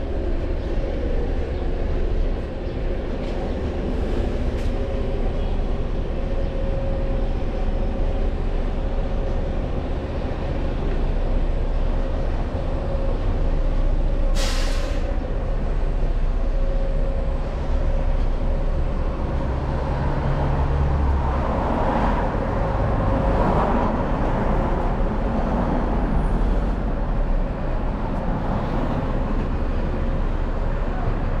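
Steady road traffic with heavy vehicles running close by, a deep rumble under a steady engine hum. About halfway through comes one short, sharp hiss, and later a louder vehicle passes.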